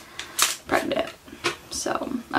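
A woman's voice in broken, soft fragments, with a few short clicks and rustles between them.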